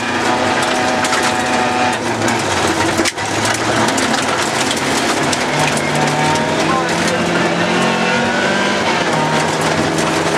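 Rally car engine running hard inside the cabin, its pitch climbing and changing with the gears and one brief lift about three seconds in, over the steady crunch and rattle of gravel thrown against the car's underside.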